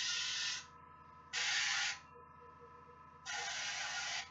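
Airbrush spraying paint in three short bursts of under a second each, a steady hiss with quiet gaps between.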